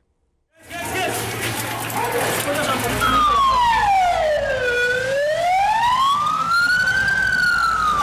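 About half a second in, loud noisy street sound with voices cuts in. From about three seconds in, an ambulance siren wails, its pitch sliding slowly down, back up, and down again.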